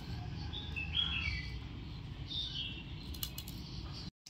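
A small bird chirping, a few short high notes that slide downward, in two groups, over a steady low background hum.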